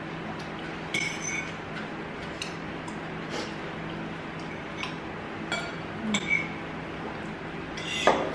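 Cutlery clinking and scraping against bowls during a meal: scattered light clinks, with a few sharper ones about six seconds in.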